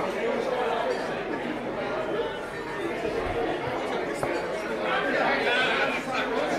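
Indistinct background chatter of several people talking at once.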